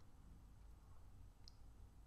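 A single faint computer mouse click about one and a half seconds in, over near-silent room tone.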